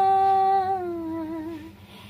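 A woman's voice alone holding one long sung note, steady at first, then sliding gently down in pitch and fading out about a second and a half in.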